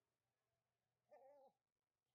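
A short, faint, wavering whine from a young dog about a second in, lasting under half a second.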